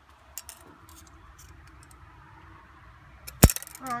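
Small clicks and taps of a steel tape measure being drawn out and laid across a model engine's metal flywheels, with one sharp metallic click near the end.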